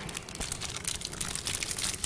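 Wrappers of chocolate mini rolls crinkling as several people carefully peel them open by hand, a quick run of small irregular crackles.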